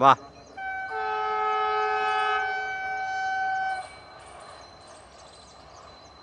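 An electric train's multi-tone horn sounding one long blast of about three seconds, several steady notes held together as a chord. It comes from the approaching Vande Bharat Express, sounding its horn toward the station.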